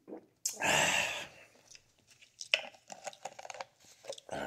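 A man's loud breathy exhale after a swig of juice from a plastic bottle, about half a second in, lasting under a second. It is followed by a scatter of light clicks and rustles as the bottle is handled.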